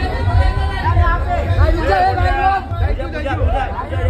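Several people talking and calling out over one another, with a low rumble underneath.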